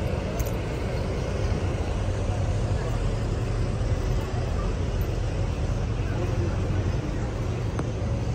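Busy outdoor street ambience: a steady low rumble with people's voices in the background.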